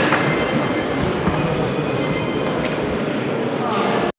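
Steady background noise with indistinct voices mixed in.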